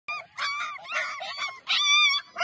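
A Gaddi puppy whining and yelping in a run of about four high-pitched cries.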